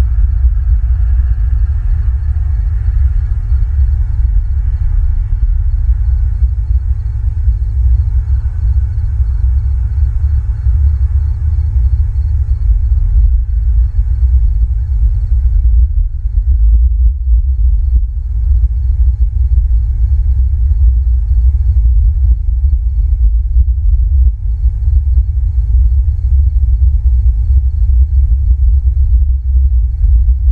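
Wind buffeting an outdoor microphone: a loud, uneven low rumble, with faint steady tones above it.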